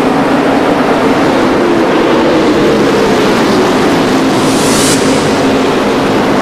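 A pack of NASCAR Busch Series V8 stock cars racing at full throttle, their engines blending into one steady, loud drone whose pitch drifts slightly. A brief rush of higher noise swells about three quarters of the way through.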